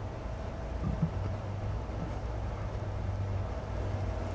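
Steady low hum with a faint thin tone above it and light hiss: room background noise.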